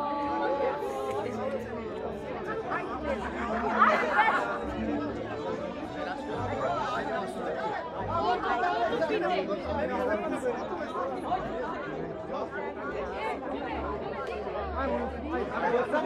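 Many people talking at once: overlapping party chatter, with no music playing.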